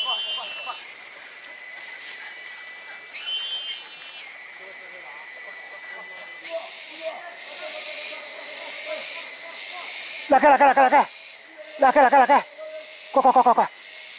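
A steady, high insect drone of forest cicadas, its pitch stepping up briefly twice in the first few seconds. From about ten seconds in come four loud bursts of rapid, repeated calls, each about half a second long.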